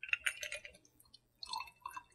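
Cocktail poured in a thin trickle from a glass mixing glass into small tasting glasses: a short, faint pour at the start and another near the end.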